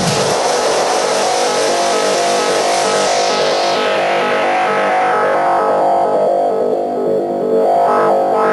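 Techno in a breakdown. The kick drum drops out right at the start, leaving held synth tones. A hissing noise layer is filtered down and away over a couple of seconds, then opens up again near the end.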